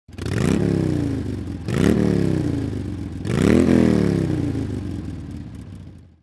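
Motorcycle engine revved three times. Each blip rises quickly in pitch and then falls away as the revs drop, about a second and a half apart, and the sound fades out after the third.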